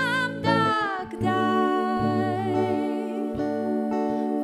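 Music: a woman singing long, wordless held notes, like humming, over sustained chords and plucked strings.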